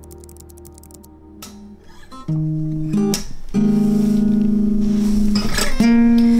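Acoustic guitar playing a slow song intro, starting softly and becoming louder and fuller about two seconds in, with long held notes.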